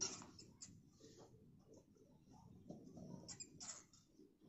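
A cornered mouse squeaking in a few short, sharp bursts while a cat paws at it: the loudest squeak comes right at the start, with two more near the end.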